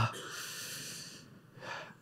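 A man's long breath in, picked up by a close microphone, fading after about a second; a short, softer breath sound follows near the end.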